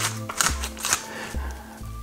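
A wooden pepper mill being twisted to grind black pepper, giving a run of short dry clicks, over background music with steady held notes.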